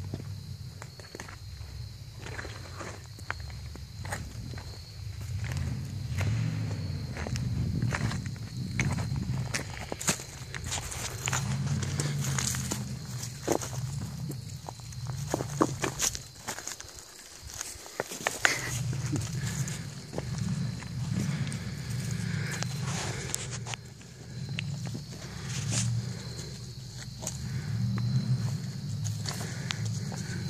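Small off-road engine working hard up a rocky hill climb, its low drone rising and falling with the throttle every few seconds, with stones and the machine clattering over rock.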